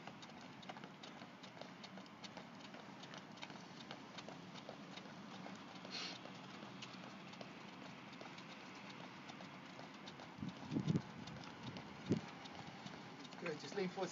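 Light, quick footfalls of trainers on paving stones as two people jog on the spot doing heel flicks, with a brief louder low sound about eleven seconds in.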